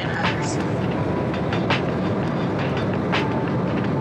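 Steady low roar of a jet airliner's cabin in flight, with a few faint clicks and a brief snatch of a woman's voice near the start.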